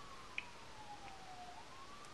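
A faint siren wailing: one slow tone falling steadily in pitch, then starting to rise again near the end.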